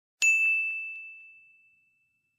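A single high, bell-like chime struck once, ringing on one clear note and fading away over about a second and a half.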